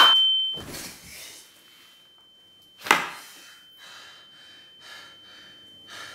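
A man's shout dies away at the start over a steady high-pitched tone that lingers throughout. A single sharp knock comes about three seconds in, followed by faint, heavy breathing.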